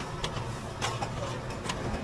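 Metal serving spoons clinking against stainless-steel buffet trays: a few sharp clicks over a low, steady background hum.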